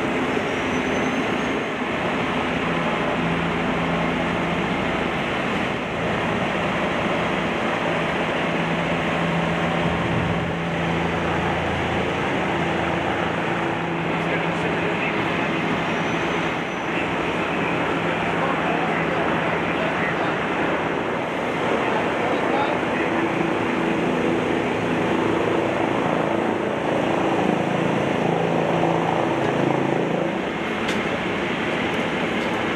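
Steady roar of highway traffic, with the low, even hum of a heavy-duty tow truck's engine running underneath.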